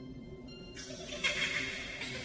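Low, sustained trailer music drone. About three quarters of a second in, a sudden harsh, shrill sound effect cuts in and carries on to the end.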